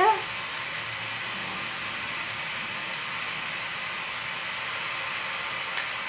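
Steady, even hiss of room noise with no distinct events.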